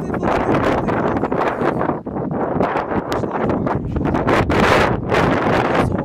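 Strong, gusty storm wind buffeting a phone's microphone, a loud rumbling rush that swells and dips, with many short sharp taps through it.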